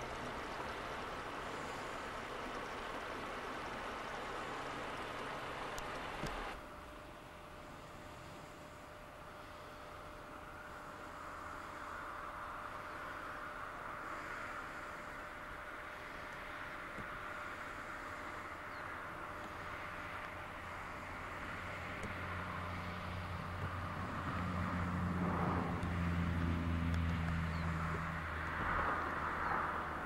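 Outdoor background noise, then a low engine drone that builds from about two-thirds of the way through, is loudest a little before the end, and eases off.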